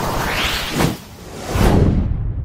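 Logo-animation whoosh sound effects: a noisy swish that sweeps up and back down, then a second, louder whoosh with a deep low hit about one and a half seconds in, fading away.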